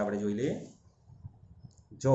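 A man's voice holding a drawn-out vowel that fades out within the first second. It is followed by faint light clicks and taps of a pen being handled against paper on a clipboard.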